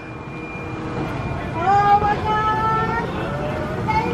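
Suspended roller coaster train rushing along its steel track, a noise that swells over the first second and a half. About a second and a half in, one long drawn-out vocal call rises in pitch, then holds for over a second.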